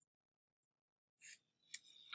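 Near silence for over a second, then a short soft hiss and a single sharp click near the end.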